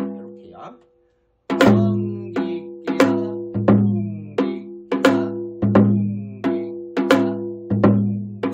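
Janggu, the Korean hourglass drum, playing the basic gutgeori rhythm: deep ringing strokes on the low head mixed with sharp stick clicks on the high head, in a repeating pattern. After a short silence about a second in, the pattern runs on steadily.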